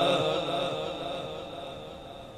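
The echo of a man's Quran recitation through a PA system dying away after a long chanted phrase ends, fading steadily. A faint steady high tone hangs underneath.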